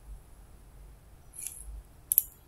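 Quiet room tone with a faint low hum, and one short soft hiss about one and a half seconds in.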